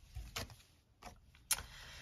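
Tarot cards being handled and laid on a tabletop: a few faint taps, then a sharp click about one and a half seconds in followed by a soft sliding.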